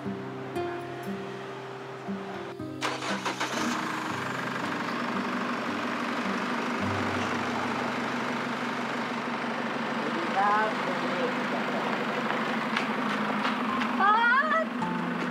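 Soft guitar music, then, about three seconds in, a car engine running steadily as a vehicle pulls away. Short rising calls from voices come near the end.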